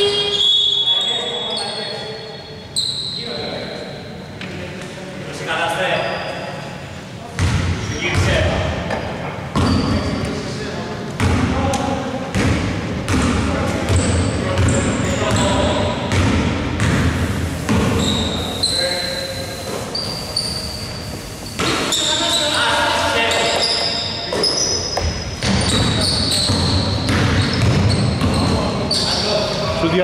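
A basketball bouncing on a wooden gym floor, with sneakers squeaking in short high squeals and players' voices calling out, in a large echoing hall.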